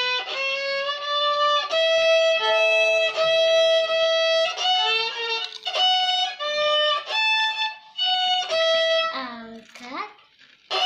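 A violin bowed by a child, playing a simple melody of held single notes one after another, with a slide down in pitch shortly before the end.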